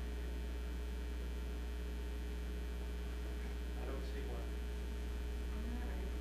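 Steady electrical mains hum on the recording, with a few faint, brief sounds about four seconds in and again near the end.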